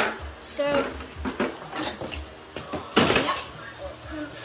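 Plastic feed buckets knocking, with a sharp knock at the start, and a short rattling crash about three seconds in as a hand or scoop digs into a plastic barrel of horse feed.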